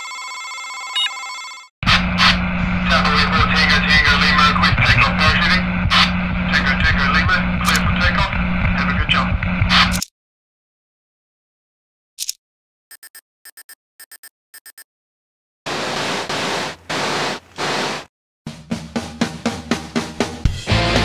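Intro sound effects: a steady electronic tone for about two seconds, then about eight seconds of dense radio-style static over a steady hum. After a pause come a run of short electronic beeps and a few bursts of static, and music with a beat starts near the end.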